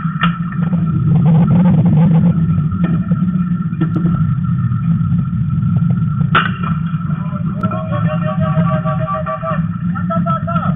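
Steady low rumble of ambient field noise, with one sharp crack about six seconds in as a metal bat meets a pitched ball. A held, voice-like call follows near the end.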